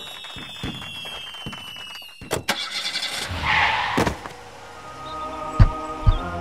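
Car sound effects in an animated scene. A falling tone fades out over the first two seconds. Sharp knocks and a short noisy burst follow around the middle, then a steady engine-like hum with heavy thumps near the end.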